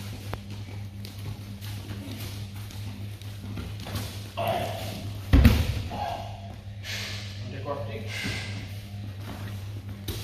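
A body hitting a plastic-covered training mat with one heavy thud about five and a half seconds in, as a partner is taken down during a Systema drill. Shuffling bare feet on the mat around it, over a steady low hum.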